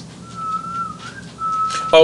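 A person whistling two short notes at about the same pitch, the first ending with a small upward slide, the second held steady.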